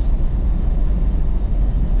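Open-top wind noise in the cabin of a 2021 Ford Bronco cruising at about 65 mph with its soft top folded half back: a steady, low rumble.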